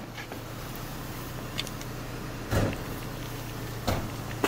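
Audi A3 petrol engine idling steadily, heard from inside the cabin. A single thump comes a little past halfway and a short click near the end.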